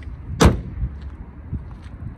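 A car hood slammed shut about half a second in: one loud, sharp bang, followed by a few lighter thumps.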